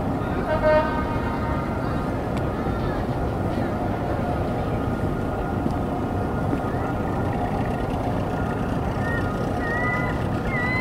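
Steady outdoor night ambience: a constant rushing noise bed, broken by a short horn-like honk about half a second in, and by pitched, sliding calls or voices near the end.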